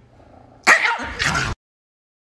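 Small dog barking twice in quick succession, two loud barks about two-thirds of a second in and just after a second. The sound then cuts off suddenly.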